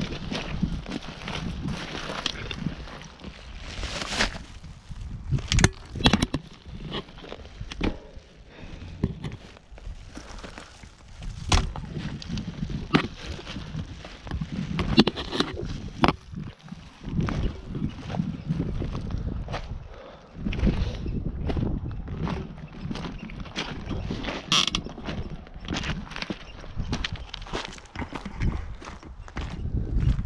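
Stones crunching and clattering under footsteps and the tyres of a loaded touring bicycle pushed across a stony shore, with irregular knocks and rattles from the bike and its bags.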